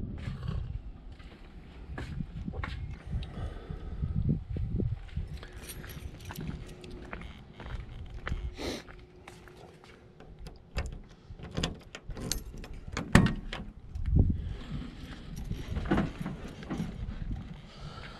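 Footsteps and low rumbling noise on the microphone, then a run of sharp clicks and clunks from the 1982 VW Vanagon's sliding door handle and latch being pulled and worked, the loudest clunk about 13 seconds in. The door stays shut: its latch is not releasing, which the owner thinks needs only a slight adjustment.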